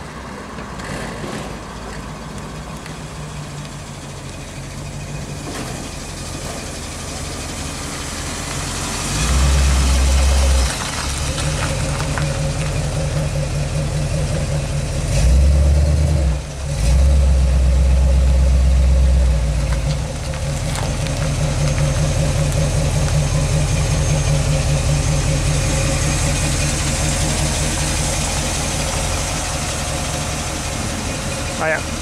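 Early-1960s Ford pickup truck's engine running as it drives slowly past. The engine gets much louder twice, about nine seconds in and again from about fifteen to nineteen seconds, then settles to a steady low running note.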